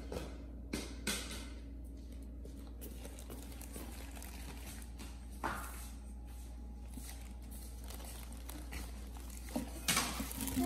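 Faint handling noise: a few brief soft swishes near the start and one about halfway through, over a steady low hum.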